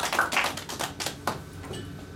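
Scattered hand clapping from a small audience, a few claps a second, thinning out and stopping after about a second.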